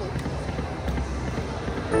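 Dancing Drums slot machine's reel-spin sound during a free-games bonus, over the steady noise of a casino floor.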